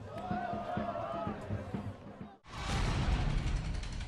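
Programme transition sting with music: about two seconds of thin wavering tones, a sudden cut, then a loud rushing swell that fades away.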